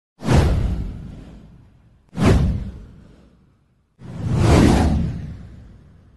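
Three whoosh sound effects of an animated title intro, about two seconds apart, each swelling quickly and then fading away; the third swells more slowly and lasts longer.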